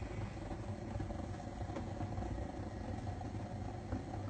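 Steady low rumble with a faint hiss from a gas stove burner heating a frying pan, with a few faint clicks.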